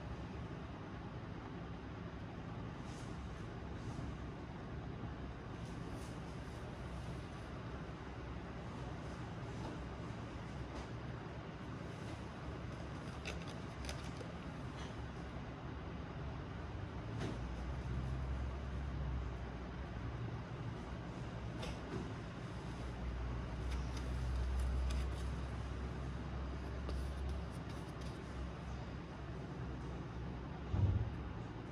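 Steady background noise with a low rumble that swells twice, around the middle and again later, and a few faint clicks.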